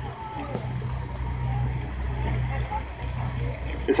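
A steady low hum with faint, indistinct voices in the background.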